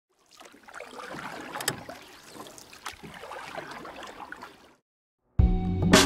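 Faint rushing, splashing noise with scattered clicks for about four seconds. After a short silence, loud music with steady instrument notes starts near the end.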